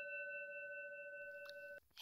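Doorbell sound effect: a steady, bell-like tone of several high pitches sounding together for almost two seconds, then cut off suddenly.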